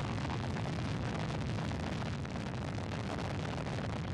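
Soyuz rocket's first-stage and four strap-on booster engines at maximum thrust in the first seconds of ascent: a steady, deep rocket noise that holds an even level throughout.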